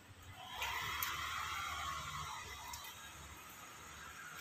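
A passing vehicle on the street: its noise swells about half a second in and fades away over the next two seconds.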